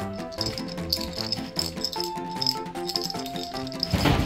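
Background music, over which a small plastic rattle ball, a cat toy, is shaken in irregular bursts of clattering.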